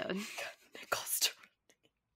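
Speech only: a woman's voice trailing off into soft, breathy whispering, with a short breathy hiss about a second in.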